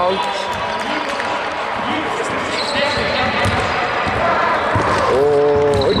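Basketball bouncing on a hardwood court amid players' voices.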